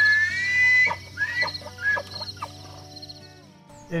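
Bull elk bugling: a high, clear whistle that rises and is held for under a second, followed by a few shorter squeals and grunts. A steady chorus of insects runs underneath until the sound cuts off near the end.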